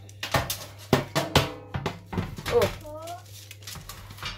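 Short knocks and taps of metal cookie cutters and a baking tray on a worktop, several in quick succession in the first two seconds, followed by a few spoken words.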